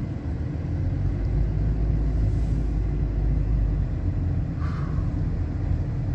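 Steady low rumble of a car in motion, heard from inside the cabin: engine and road noise, swelling slightly in the middle.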